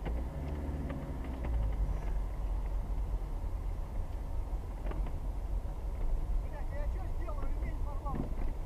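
Steady low rumble of a moving car, with a few faint voices and some brief knocks over it.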